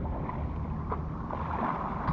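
Pool water splashing from a swimmer's front-crawl arm strokes, with wind rumbling on the microphone.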